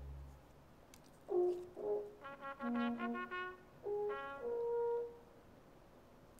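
Brass instruments playing a short, slow phrase of held notes, sometimes two sounding together, starting about a second in and stopping shortly before the end.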